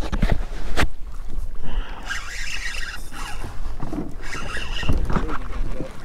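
A hooked red drum being fought from a kayak with a spinning rod and reel: the reel works in two rasping spells, with a few knocks against the kayak.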